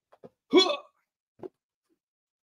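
A man's single short wordless vocal sound about half a second in, with a couple of faint short ticks around it.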